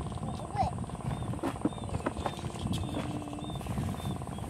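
Open-air ambience: a steady low rumble with indistinct voices, and faint short high chirps scattered through it.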